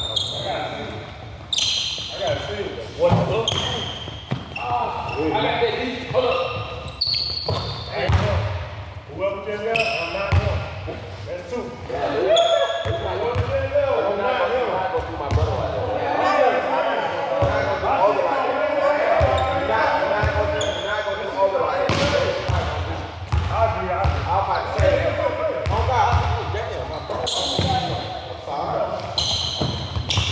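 A basketball dribbled and bouncing on a hard court during half-court play, giving irregular sharp thuds, with players' voices calling out indistinctly in the background.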